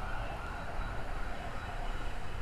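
A siren wailing, a wavering tone in the background.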